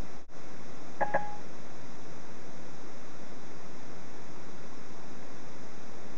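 Steady hiss of the hands-free call audio through the Ford Sync link, with a short electronic beep about a second in.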